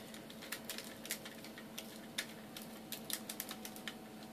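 Quiet, irregular small plastic clicks and rattles from a 3D-printed scissor lift being worked by hand. Its joints were printed already assembled and have just been pried loose. A faint steady hum runs underneath.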